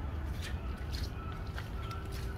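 Wild birds chirping and calling in short high notes, with a thin whistled note held for about a second near the end, over a steady low rumble.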